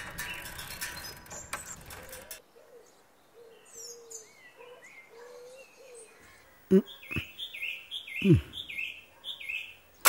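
Background music cuts off about two seconds in, leaving birds chirping in the open air. In the second half a bird repeats a short high chirp about twice a second, over a man's short grunted exclamations.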